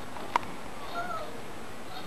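A common genet eating from a stainless-steel bowl, with one sharp clink about a third of a second in. A short, slightly falling animal call follows about a second in.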